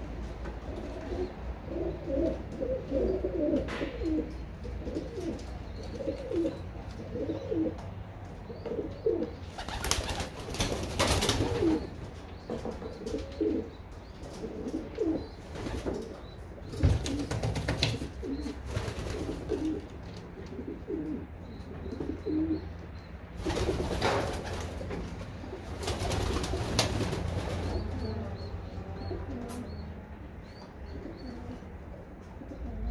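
Several racing pigeons cooing, a near-continuous overlapping run of low coos. Four times a louder rustling burst of wing flapping cuts in, each lasting a second or two.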